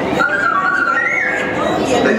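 R2-D2 droid's electronic whistling: a wavering tone that steps upward in pitch about a second in. It sits over the murmur of a waiting crowd.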